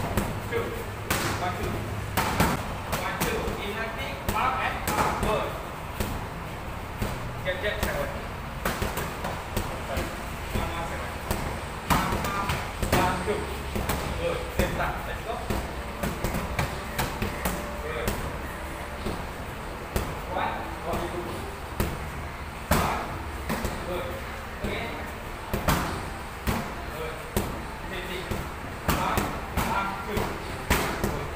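Gloved punches and strikes landing on focus mitts and a belly pad during padwork: sharp slaps in quick bursts of combinations with short pauses between them.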